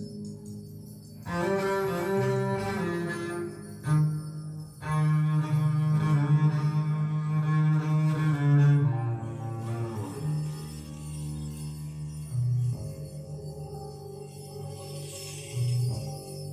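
A music test track played through a pair of tiny homemade two-way speakers, each built from a 10 cm Kenwood full-range driver and a super tweeter. The music has long, held low notes, loudest in the middle, with a brief high tinkle near the end.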